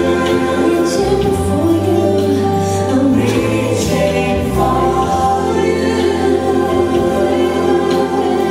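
Choir singing Christian gospel music in sustained, held chords over a steady low bass accompaniment.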